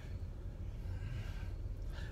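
Low, steady rumble of car cabin noise inside a car.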